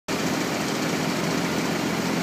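Engine of a compact AL-20DX articulated loader idling steadily, heard from close by on the machine.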